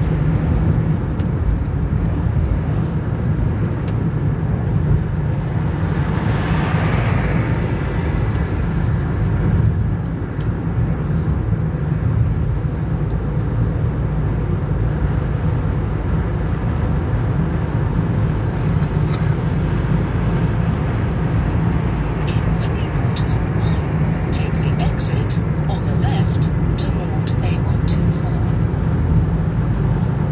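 Steady in-cabin road and engine rumble of a car cruising on a dual carriageway, with a rushing swell of noise about six to eight seconds in and a run of light clicks near the end.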